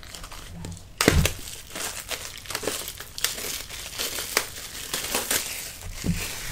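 Photobook pages being turned and smoothed flat by hand. After a quiet first second comes a sudden thump, then continuous paper rustling and crinkling with sharp crackles.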